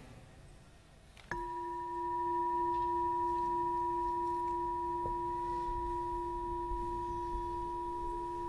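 Singing bowl struck once about a second in, then ringing on, a steady low tone with two fainter higher tones above it, fading only slightly.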